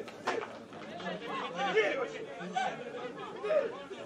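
Voices calling out and chattering across an outdoor football pitch, with one sharp knock just after the start.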